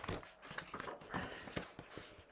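Pages of a picture book being turned and handled: a few soft, irregular paper rustles and taps.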